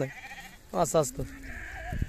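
Flock of sheep bleating, with one wavering bleat standing out about a second in and fainter calls around it.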